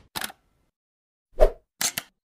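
Sound effects of an animated logo intro: a brief swish, then a pop about one and a half seconds in, then two quick clicks near the end, with silence between them.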